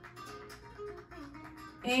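Flamenco guitar music playing quietly in the background, plucked notes.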